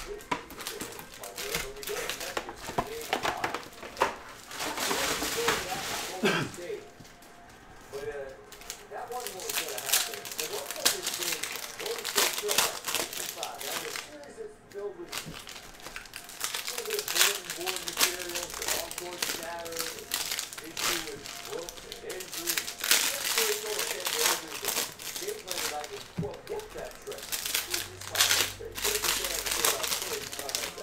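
Foil wrappers of Bowman Baseball Jumbo card packs crinkling and tearing as packs are opened by hand, with many quick clicks of cards being flicked through and set on a stack.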